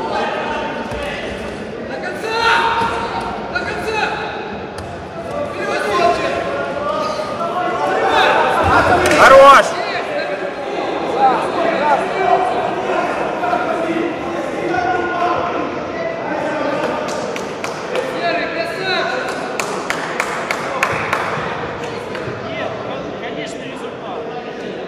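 Men's voices shouting in an echoing sports hall during a grappling bout, with a loud thud of bodies hitting the mat about nine seconds in as one fighter is thrown down.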